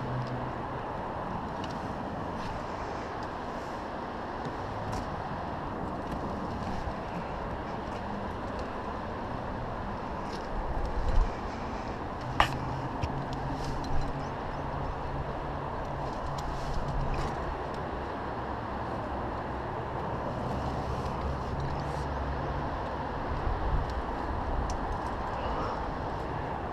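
Steady rushing outdoor noise with a low hum under it, with a few sharp clicks and scrapes of a rock climber's hands and gear on granite; the sharpest click comes about twelve seconds in.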